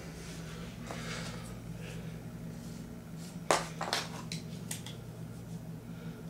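Handling noises from a padded, bent steel bar and a marker pen on a wooden board: a sharp knock a little past halfway, the loudest sound, followed by a few light clicks, over a steady low hum.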